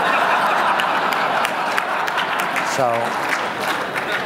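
Audience applauding, an even wash of clapping that begins to die down near the end as a man starts speaking again.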